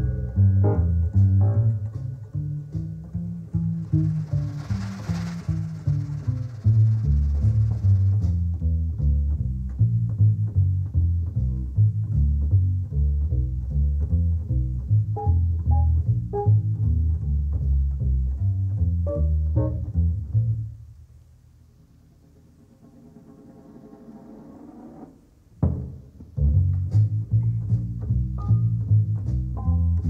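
1950s jazz record playing: a pizzicato double bass walking line with small drum figures behind it and a cymbal wash about four seconds in. About two-thirds of the way through the band drops out for about four seconds, leaving only a faint rising sound, before a sharp hit and the bass comes back in.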